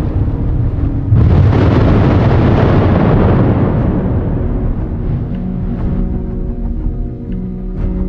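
Dark cinematic background music, with a sudden loud deep boom about a second in that rumbles away over the next few seconds.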